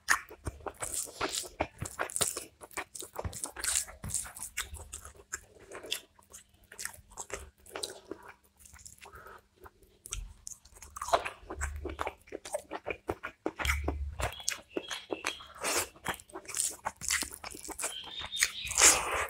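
Close-miked eating: a steady run of crunching bites, clicks and wet chewing as chicken roast and rice are eaten by hand.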